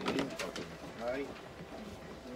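Short murmured voice sounds, low 'hmm'/'hai'-like utterances, with a few sharp clicks and knocks as a plastic pet carrier and its wire door are handled.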